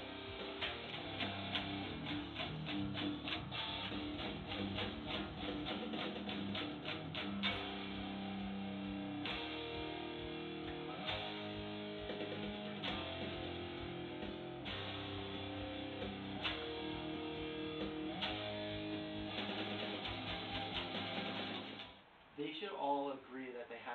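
Electric guitar playing a rhythmic rock riff, with fast, evenly repeated picked notes through the first several seconds.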